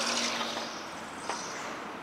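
Steady low hum of an idling truck engine. A high hiss fades away over the first second, and there is a single light click just past the middle.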